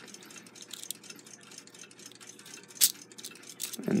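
Faint metallic clicks and ticks from a clock's alarm mainspring box as its brass great wheel is turned by hand to catch the spring's hook, with one sharper click a little under three seconds in.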